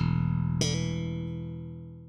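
Five-string electric bass, a Warwick Corvette: a last low note is plucked and left to ring, with a higher note added just over half a second in, both slowly fading.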